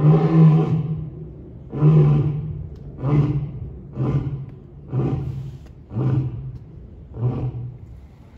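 Male lion roaring: seven deep calls about a second apart, the first two longest and loudest, the rest shorter and fading toward the end.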